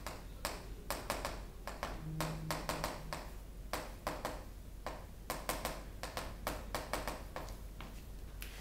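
Chalk writing on a blackboard: a quick, irregular run of sharp taps and short scratches as words are chalked in.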